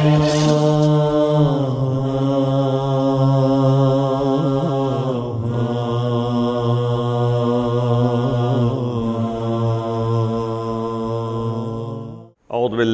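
A man's voice chanting in long, low, held notes that slide down in pitch about three times, with small wavering ornaments between.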